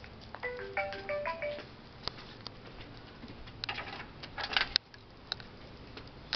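An electronic chime plays a short tune of clear, steady notes, then there is a burst of rattling and clattering about four seconds in, as the front screen door is handled and opened.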